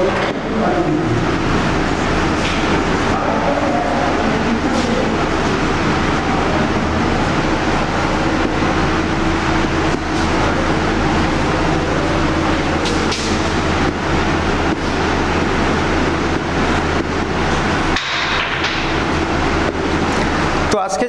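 Steady, loud background noise with a constant low hum and hiss throughout, of a mechanical, traffic-like kind.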